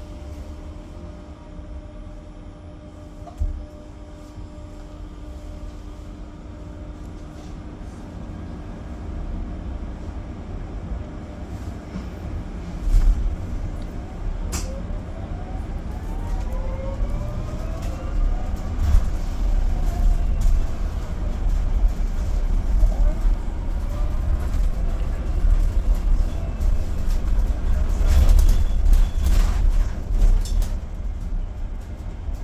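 Cabin of an Alexander Dennis Enviro200EV electric bus: a low rumble with a steady hum at first, then the bus gets under way about halfway through. The electric drive's whine rises and falls in pitch with speed over the road rumble. A few sharp clicks, and a cluster of knocks and rattles near the end.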